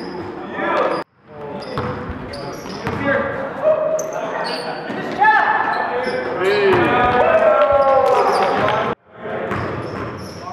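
A basketball bouncing on a gym floor during game play, with players shouting, loudest in the second half. The sound drops out briefly twice, about a second in and near the end, where the footage is cut.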